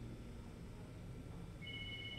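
Low, quiet room hum. About a second and a half in, a telephone starts ringing with a steady electronic two-tone ring.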